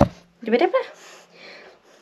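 A single sharp knock right at the start, followed about half a second later by a brief murmur of a woman's voice.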